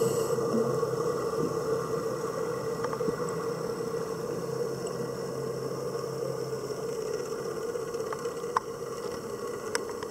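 Underwater ambience: a steady hum of a distant boat engine carried through the water, slowly fading, with a few faint sharp clicks near the end.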